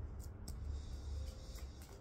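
Faint clicks of tarot cards being handled on a glass tabletop, a few in the first half-second, over a low steady hum.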